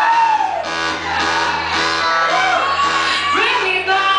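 Live music with a voice singing over a backing track. The sung notes slide up and down in long arching sweeps.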